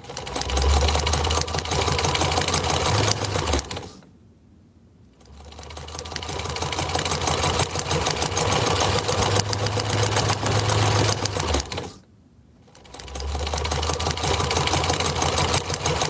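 Sewing machine running in three long runs of fast, even stitching with a low motor hum underneath. It stops briefly about four seconds in and again about twelve seconds in, each time starting up again after about a second.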